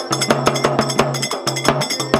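Fast rhythmic percussion music with sharp metallic strikes, several a second, over a steady low droning tone.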